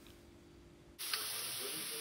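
Near silence for about a second, then minced meat and shredded cabbage frying in oil in a pan start sizzling abruptly, a steady, even hiss.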